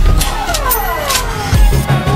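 Tamil film background score: heavy bass beats with a descending swoop of pitched sound, sliding down over about a second before the next bass hit.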